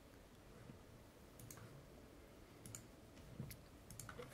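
Near silence, broken by a few faint computer mouse clicks that come in small pairs from about a second and a half in.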